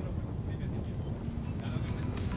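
Classic Mini race cars running down the straight, a steady low engine rumble. Music begins to come in near the end.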